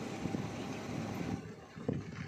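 Wind buffeting the phone's microphone, a low, uneven rumble, with a short knock near the end.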